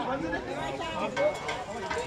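Indistinct voices of several people talking in the background, overlapping, with no words clear.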